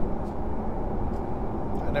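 Steady road and engine noise inside a pickup truck's cab at highway speed, a low even rumble.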